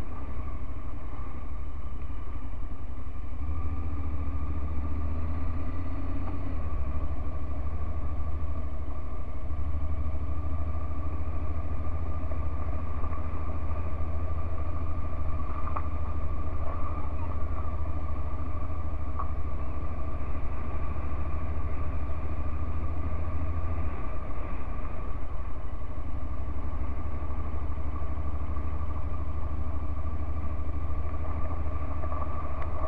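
Honda NC750X motorcycle's parallel-twin engine running steadily while riding at low speed. Its low drone strengthens a few seconds in and eases back near the end.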